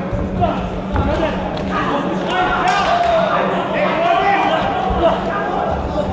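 Voices calling out across a large, echoing sports hall, with a few dull thuds from the boxing ring and a steady low hum.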